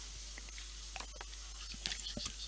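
Quiet room tone with a faint hum and a few faint, scattered clicks, one a little louder near the end.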